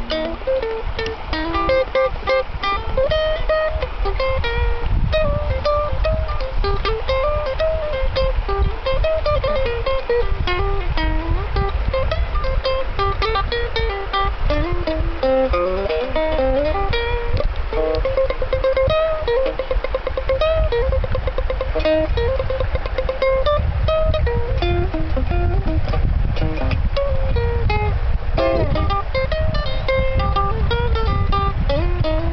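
Nylon-string acoustic guitar playing a solo instrumental break in a jump-blues tune: a quick picked single-note melody over bass notes, with no singing.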